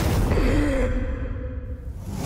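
A breathy, voiced gasp that bends in pitch about half a second in, over a loud low rumble of cinematic sound design.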